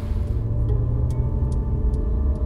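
Deep, steady rumble of a vehicle driving on a wet road, heard from inside the cabin, with a few light ticks about every half second. Soft music lies underneath.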